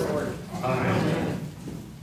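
A man's voice speaking, trailing off about a second and a half in, leaving only quiet room sound.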